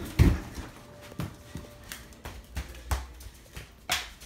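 Footfalls and thumps of people running through a house: one heavy thud just after the start, then irregular lighter knocks.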